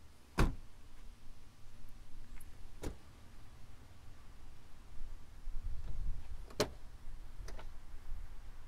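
The 4Runner's rear side door is shut with a sharp thump about half a second in. Three lighter knocks or clicks follow, the last two near the end.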